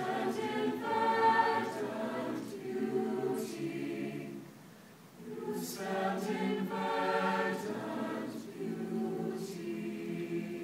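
Mixed high-school choir singing, two phrases with a short breath between them about five seconds in.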